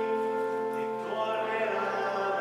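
A hymn sung with instrumental accompaniment. Long held notes move to a new chord about a second in.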